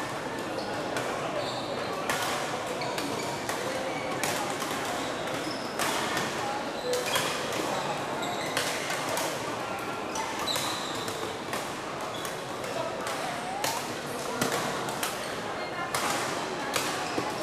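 Busy badminton hall: racquets hitting shuttlecocks on many courts as frequent sharp, irregular clicks, with short high squeaks from shoes on the court floor, over a steady murmur of players' and spectators' voices.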